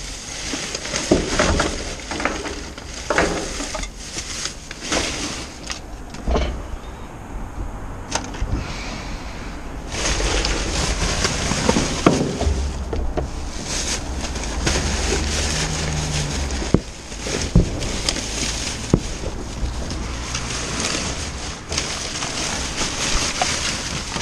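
Plastic bin bags and wrapping rustling and crinkling as hands rummage through a large plastic wheelie bin, with scattered knocks of items against the bin. The rustling grows louder and busier about ten seconds in, as a black bin bag is pulled about.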